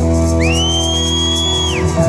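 Live rock band holding a sustained chord at the close of a song, with a loud, shrill whistle from the audience that glides up, holds one high note for over a second, and falls away.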